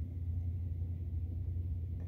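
A steady low hum with nothing else standing out above it.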